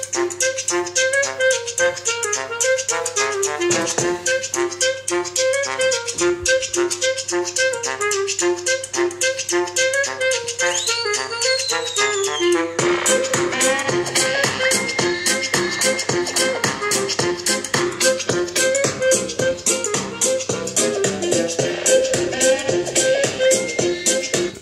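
Music with a fast, steady beat played through a small Coloud Bang portable speaker from a phone. About halfway through, the music moves into a new section.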